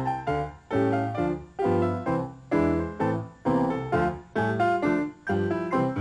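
A grand piano played four hands by two players: a duet of chords and melody in a steady, lively rhythm, each note struck sharply and dying away.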